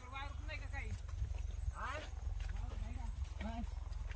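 Tractor diesel engine running steadily, a low rumble, under people's voices calling out.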